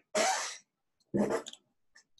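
A person coughing twice, two short harsh bursts about a second apart.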